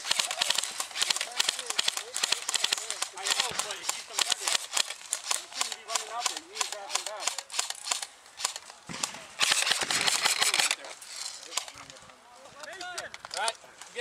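Airsoft electric guns firing in rapid bursts of sharp clicking shots. The shots are dense for about the first eight seconds and sparser after.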